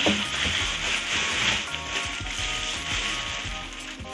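Plastic bag lining a drum rustling and crinkling as hands work inside it, over background music with steady held notes.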